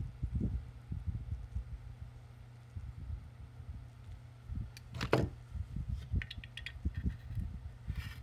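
Handling noise as the leads of a replacement SCR are tilted and bent with needle-nose pliers over a circuit board: many soft low knocks and a few light clicks, over a steady low hum.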